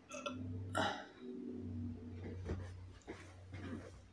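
A man belching while drinking cup after cup of raib (Moroccan fermented milk). There is a sharp loud burst about a second in, then a drawn-out low belch, and smaller clicks and mouth noises later.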